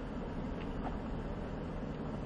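Ford Raptor pickup crawling at walking pace on a gravel trail, a steady low engine and road rumble heard from inside the cabin.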